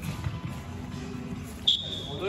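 Music playing in the background, and near the end a single short, shrill whistle blast from a referee's whistle, after which play stops.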